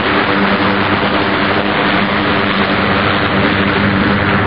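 Radial piston engines of a C-47 Dakota and a smaller twin-engined aircraft flying in formation, a steady, even drone.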